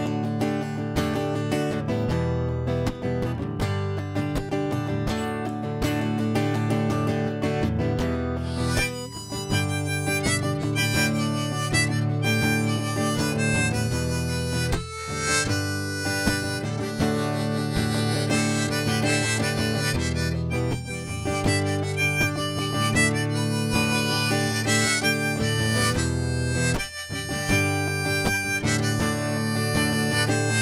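Instrumental intro on strummed acoustic guitar and rack-held harmonica. The guitar strums on its own at first, and the harmonica joins and plays over it from about nine seconds in.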